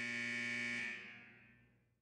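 A game-clock buzzer sounds a steady, harsh tone as the 60-second countdown runs out, marking time up, then fades away about a second in.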